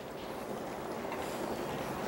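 Steady rain falling outside, an even hiss heard from indoors.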